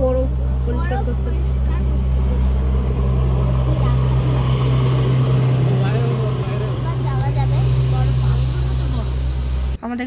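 Steady low engine and road rumble inside a moving vehicle's cabin, with faint voices over it; the rumble cuts off suddenly near the end.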